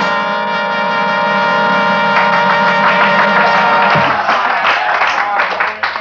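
Small jazz band with brass holding one long sustained chord for about four seconds, then moving into a short run of changing notes.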